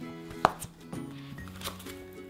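A glossy magazine laid flat onto a stack of magazines: one sharp slap about half a second in, then a few lighter taps, over quiet background music.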